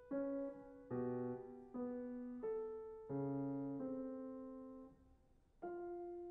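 Grand piano played solo: slow, separate notes and chords struck about once a second, each left to ring and fade, with a short pause about five seconds in before the next chord.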